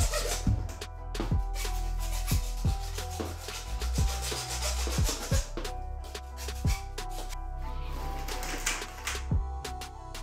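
Hand hacksaw cutting through PVC tube in repeated back-and-forth rasping strokes, which stop shortly before the end. Background music with a steady beat plays along.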